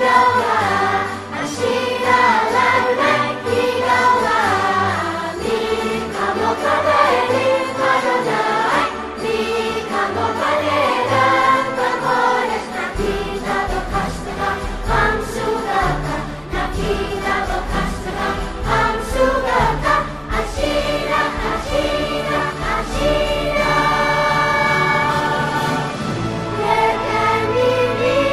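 Children's choir singing a slow ballad with female voices and instrumental accompaniment; a low bass line comes in about halfway through.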